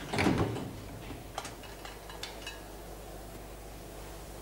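Metal cell door hardware: a clunk just after the start, then a few faint clicks, as of a bolt and lock being worked after the door has slammed shut.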